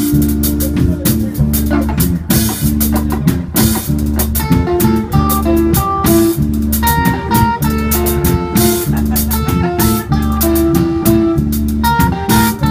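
Live reggae-dub band playing: electric bass, electric guitar, drum kit and keyboard, with a steady, evenly repeating beat and held melodic notes over a strong bass line.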